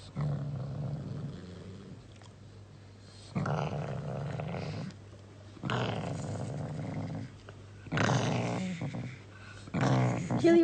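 A corgi growling with its teeth bared: a rough, low growl repeated in separate bouts every two to three seconds.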